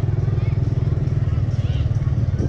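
Motorcycle engine running steadily while riding, heard from the bike itself as a rapid, even low pulsing.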